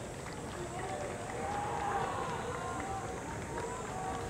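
Indistinct voices of several people talking at a distance, with one longer voiced call in the middle, over steady outdoor background noise.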